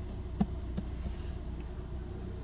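Steady low hum inside a car's cabin, with a faint click about half a second in.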